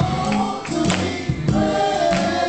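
Men's gospel choir singing in harmony, holding long notes, with a few sharp drum hits.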